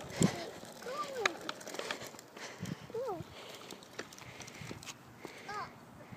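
A young child's short wordless vocal sounds, three brief rising-and-falling calls, over light clicking and rattling from a small bike with plastic training wheels rolling on concrete.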